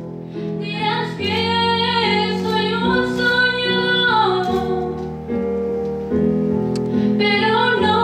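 A woman singing solo into a microphone, holding long notes, over sustained instrumental chords that change every second or so.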